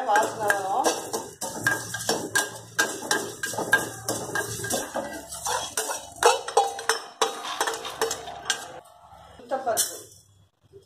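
A steel spoon stirs and scrapes dry-roasting coriander seeds in a small steel kadai: quick, irregular metal-on-metal clinks and scrapes with the seeds rattling, thinning out over the last couple of seconds.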